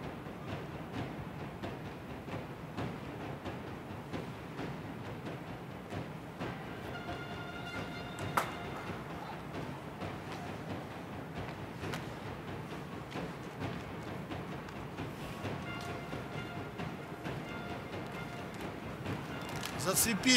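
Ice hockey arena sound during live play: a steady wash of crowd and rink noise, with a single sharp knock about eight seconds in. Faint held tones come in from about seven to nine seconds in and again near the end.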